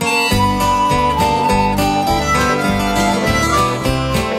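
Opening bars of an instrumental country intro: acoustic guitar and bass with a harmonica playing a held, wavering melody line.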